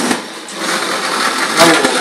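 Small electric gear motors of a sumo robot whirring as it drives across the ring. There is a sharp knock at the very start.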